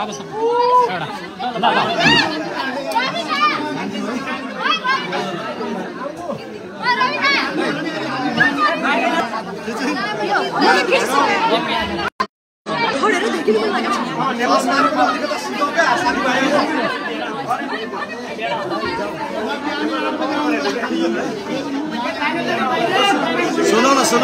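A crowd of many people talking at once, a dense overlapping chatter with no single voice standing out. The sound cuts out completely for about half a second near the middle.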